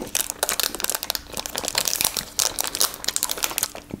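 Foil wrapper of a glazed curd-cheese bar (glazed syrok) being peeled open and crinkled by hand: a dense, irregular run of small crackling rustles.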